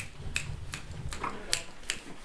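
Fingers snapping a steady beat, about three snaps a second, setting the tempo for a fast jazz tune. A low rumble lies under the first second and a half.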